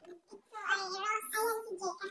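A child singing in a high voice, in short held phrases, starting about half a second in.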